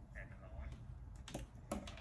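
A few sharp clicks of a computer keyboard in the second half, under faint speech.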